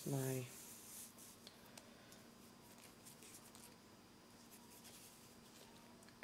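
Faint rubbing of size 10 cotton thread sliding through the fingers as a needle-tatted ring is drawn closed, with a few soft ticks.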